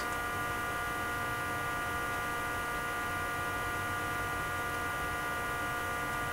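Steady electrical hum: several fixed high tones over a faint hiss, unchanging in level.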